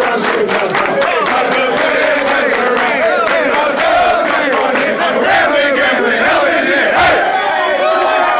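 A locker room full of football players loudly belting out their school fight song together in a shouted, ragged unison, with rhythmic hand claps over the first few seconds.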